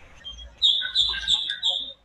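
Small songbird singing: a quick run of high, chirping notes lasting just over a second, starting about half a second in.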